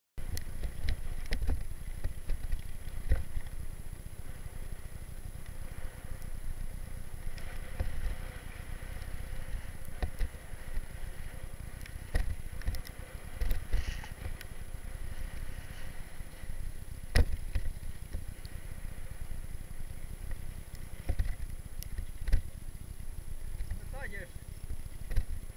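Mountain bike ridden down a bumpy dirt track, heard from a camera on the bike: a steady rumble of wind and tyres on the microphone, broken by sharp knocks and rattles as the bike hits bumps, the loudest about two-thirds of the way through.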